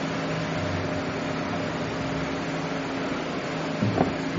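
Steady background room noise: a low, even hum with hiss, the kind a fan or air conditioner makes.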